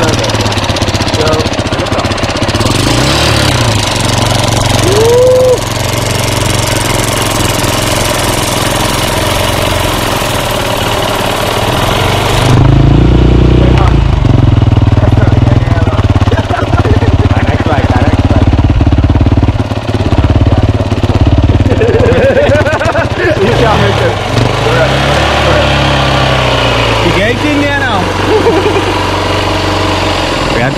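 Dirt bike engine running steadily, its exhaust fed through a hose into a motorcycle inner tube to inflate it. It gets noticeably louder about twelve seconds in.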